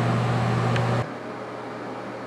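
Steady electrical hum and whir of a bathroom exhaust fan, which drops suddenly to a quieter, lower hum about a second in.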